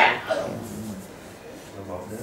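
A short, loud cry from a person's voice at the very start, followed by a faint voice and a low steady hum.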